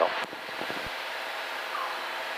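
Steady drone of a Columbia 350's six-cylinder engine and propeller, with airflow noise, heard in the cabin in flight. There is a brief low click a little under a second in.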